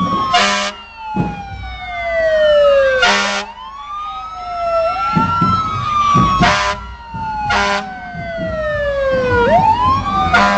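Fire engine siren wailing as the truck passes, its pitch falling slowly and then sweeping back up about every three seconds, cut through by four short blasts of the truck's horn.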